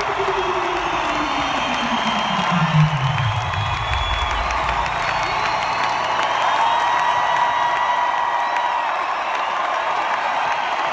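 Arena crowd cheering and screaming at a live hip-hop concert, with whistles cutting through. A low tone from the sound system slides steadily down in pitch over the first four seconds.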